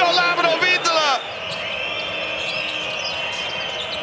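Basketball arena sound: a steady crowd noise with the ball bouncing on the hardwood court, under a brief burst of commentary at the start.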